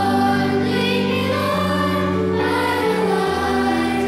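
A choir singing a hymn over long, sustained accompaniment chords.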